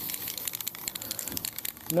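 Army Painter aerosol primer can hissing steadily as it sprays, with irregular crackling over the hiss.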